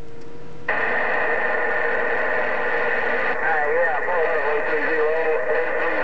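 President HR2510 radio receiving on 27.085 MHz. A short steady tone gives way, under a second in, to loud hiss with a steady whistle. From about halfway, a faint voice of a distant station comes through the noise.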